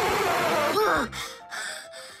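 A long, loud breath blown out into a soap film to make a bubble, cutting off under a second in and followed by a short falling tone, over background music.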